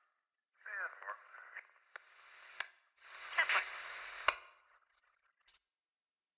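A voice coming over a two-way radio, thin and band-limited, in short garbled transmissions broken by sharp clicks. It fades out about five seconds in.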